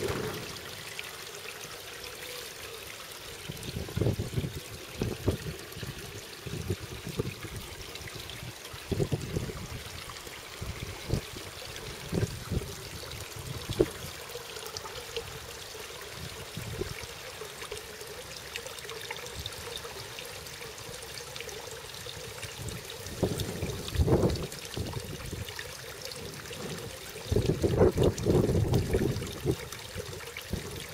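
Water trickling and pouring from a pipe outlet into a garden fish pond, steady throughout, with several short low rumbles; the loudest come near the end.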